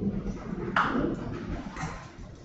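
Handling noises: a paper case file and its sheets being picked up and opened, with one sharp knock about three-quarters of a second in and a smaller one near the end.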